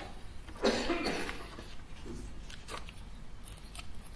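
A short cough-like noise about two-thirds of a second in, then a few faint clicks over a low, steady room hum.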